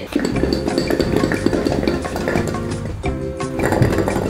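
Background music playing over garlic cloves rattling and clinking against the inside of a glass jar as it is shaken hard.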